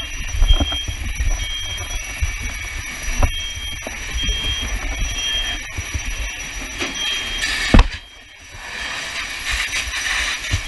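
An electronic alarm beeping in short, high, single-pitched beeps at irregular spacing, over a steady low rumble. A sharp knock comes just before eight seconds in.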